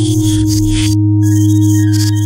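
Experimental electronic music: a steady low synthesizer drone with a held higher tone above it, under flickering high hiss that drops out briefly about a second in.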